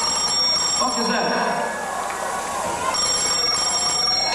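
A telephone ringing twice, a ring at the start and another about three seconds in, over the noise of voices.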